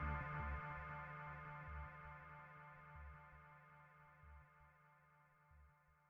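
Background music with sustained tones over a pulsing bass, fading out.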